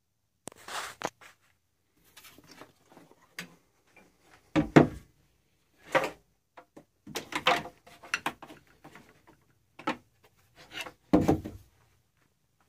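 A handheld electric planer, motor switched off, being handled and set onto a wooden jointer table: irregular knocks, clunks and scraping of its plastic body and base against wood. The loudest clunks come a little before halfway and near the end.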